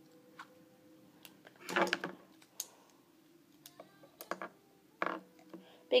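Faint, scattered small clicks and taps of fingers handling rubber bands and a plastic bead, with two brief vocal sounds, one about two seconds in and one near the end.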